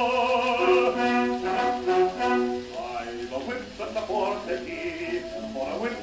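A 78 rpm shellac record playing a male singer with accompaniment. A long note is held for the first couple of seconds, then shorter notes follow.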